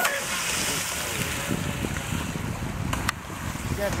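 Electric RC monohull racing boat running fast across a lake at a distance, a steady wash of motor and water noise with no clear pitch.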